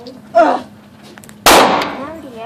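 A single 9mm rifle shot about a second and a half in, sharp and loud with a long echoing tail from the indoor range's walls. Shortly before it there is a brief voice sound.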